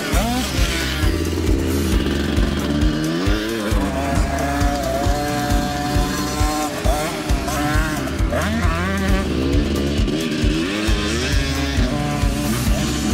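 A 50cc dirt bike engine revving up and down several times, its pitch climbing as it accelerates, under music with a steady beat.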